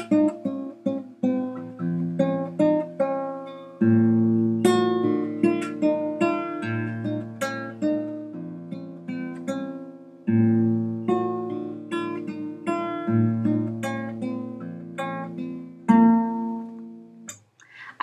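Classical guitar played fingerstyle: a slow, simple melody plucked note by note over held bass notes, with new phrases starting about 4 and 10 seconds in. The playing stops shortly before the end.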